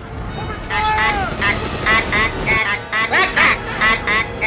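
Martians' squawking "ack ack" voices: rapid, warbling bursts of chatter starting under a second in and running on in quick succession, over film music.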